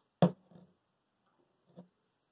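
Hands handling a steel screw pin shackle with a tie mouse through its pin: a sharp click just after the start, a few faint small sounds, and a softer short knock near the end.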